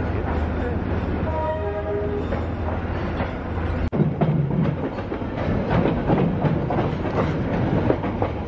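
Vietnamese passenger train moving out of the station: a steady low rumble, with a short tone stepping down in pitch around two seconds in. A little before four seconds in comes a brief gap, then the wheels clatter rhythmically over the rail joints as the train rolls on.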